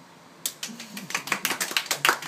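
A small group clapping, starting about half a second in and growing louder.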